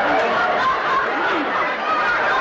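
Several people talking over one another at once, a steady jumble of overlapping voices with no single clear speaker.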